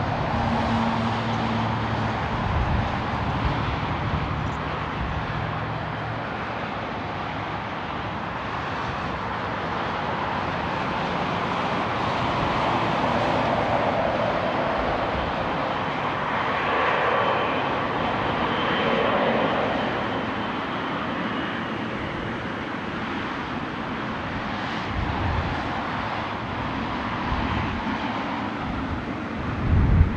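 Boeing 777-300ER's GE90-115B jet engines at taxi power, a steady whining roar. It swells through the middle as the aircraft turns toward the microphone, with faint whistling tones at its loudest, then eases.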